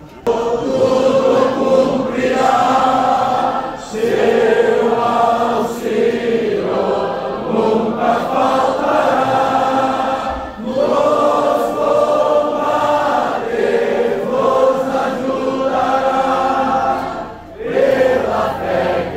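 A large group of voices singing a hymn together in long held phrases, with short breaks between phrases. It starts suddenly and loudly right at the outset.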